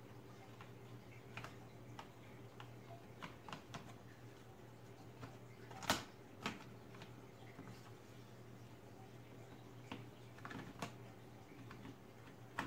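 Faint, scattered plastic clicks and taps as a Lenovo G50 laptop's removable battery is worked into its bay, the sharpest click coming about six seconds in, over a steady low hum.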